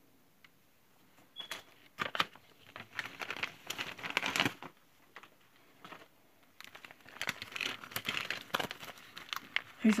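Paper and cellophane packaging crinkling and rustling as cards and a plastic bag of craft embellishments are handled, in two stretches of a few seconds each.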